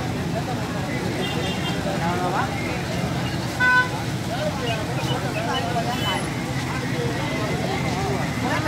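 Busy outdoor market ambience: scattered background voices over a steady traffic hum. A short horn beep sounds a little over three and a half seconds in and is the loudest moment.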